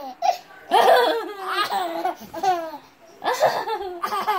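A baby laughing in three bursts, with short quiet breaths between.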